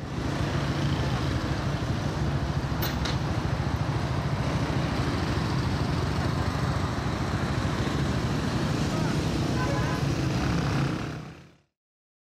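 Steady low rumble of a car driving through city traffic, heard from inside the moving car. A short click about three seconds in; the sound fades out just before the end.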